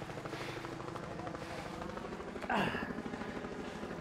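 Helicopter rotor chopping steadily in a fast even rhythm. About two and a half seconds in there is a short voice-like cry that falls in pitch.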